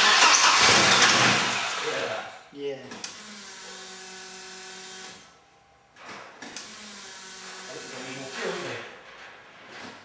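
The starter cranks the Mercedes 190E Cosworth's 16-valve four-cylinder engine, loudly for about two seconds before fading, and the engine does not catch and run: too little starting fuel, which the crew mean to fix by raising the starting fuel. A quieter steady hum follows for a couple of seconds.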